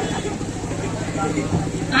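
Steady low hum and background noise of a live stage sound system in a pause between spoken lines, with faint murmuring voices.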